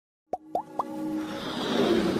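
Animated logo-intro sound effects: three quick rising bloops about a quarter second apart, then a whooshing riser with a held musical tone that swells louder toward the end.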